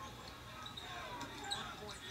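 Faint basketball game broadcast audio: a ball dribbling on a hardwood court, with faint commentary speech underneath.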